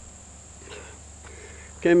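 Steady, high-pitched insect chorus, a continuous thin buzz in the background, with a man's voice starting near the end.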